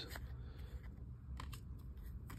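Topps baseball cards being slid through by hand, faint, with a few light ticks as card edges knock against the stack.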